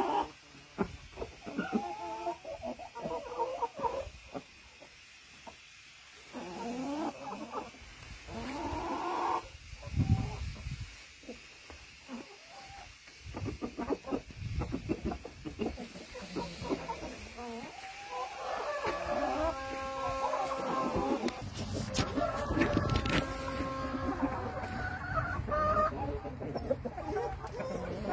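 Black mottled heavy Cochin chickens clucking and calling in short bursts, with a run of longer drawn-out calls past the middle. A couple of dull thumps break in.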